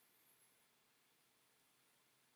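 Near silence: faint steady hiss of room tone.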